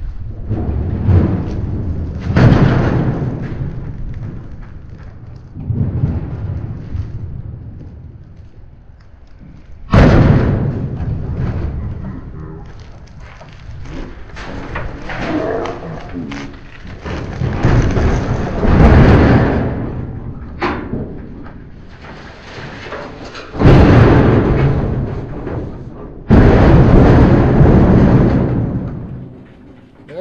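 Heavy shrink-wrapped stainless steel barbecue grill being tipped, pushed and slid onto a pickup truck bed: a run of loud, rumbling scrapes and thuds, with sudden jolts about ten seconds in and twice more near the end.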